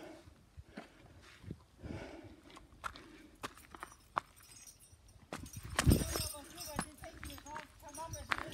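Footsteps on a gravel and rock trail: irregular crunching steps, sparse at first and closer together in the second half, with one heavier thump about six seconds in.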